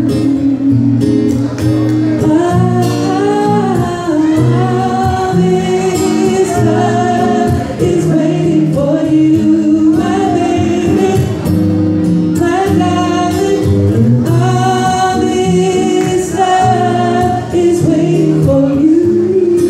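Live R&B song: a man sings a melody that slides between notes into a microphone, over an acoustic guitar accompaniment, heard through the hall's PA.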